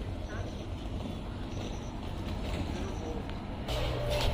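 Steady low outdoor background rumble with faint distant voices. Shortly before the end it gives way to a steadier low indoor hum.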